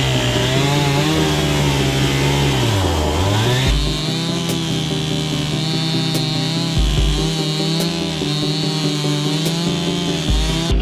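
Gas chainsaw cutting into a tree trunk. Its engine pitch sags and recovers about three seconds in, then holds steady at full throttle through the cut.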